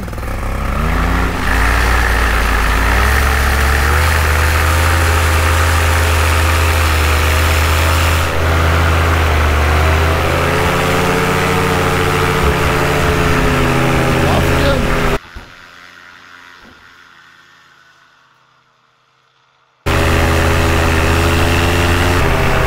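Tandem paramotor trike's engine and propeller rising to full throttle for the takeoff run, then running loud and steady. About fifteen seconds in the sound drops away suddenly and comes back at full power about five seconds later.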